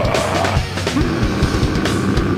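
Live metal band playing: distorted electric guitars and bass over rapid drumming, with a held guitar note from about halfway through.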